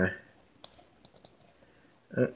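A man's voice trailing off, then quiet room tone with a few faint, sharp clicks, one a little after half a second in and a small cluster about a second in.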